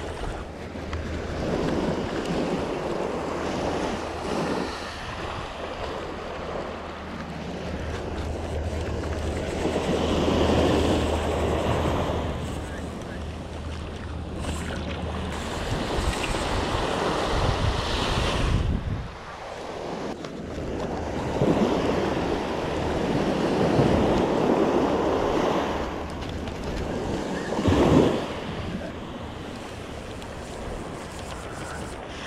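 Small surf washing up a sandy beach, swelling and fading every few seconds, with wind buffeting the microphone.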